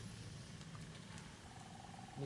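Campfire burning: a faint, steady low rumble of flames with a few light crackles.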